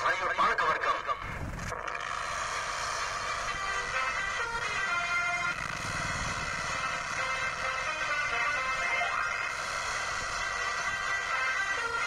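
A song with singing played through a tinny horn loudspeaker, over the steady running of a tractor engine.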